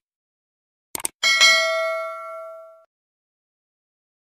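Subscribe-button animation sound effect: a couple of quick mouse-like clicks about a second in, then a bright notification bell ding that rings out and fades over about a second and a half.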